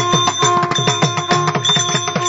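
Carnatic concert music: rapid mridangam strokes, the low strokes falling in pitch, over a steady drone.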